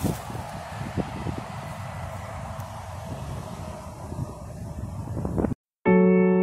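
Steady traffic noise from interstate cars and trucks passing, with wind buffeting the microphone and a few handling bumps. It cuts off suddenly about five and a half seconds in, and electric piano music starts just before the end.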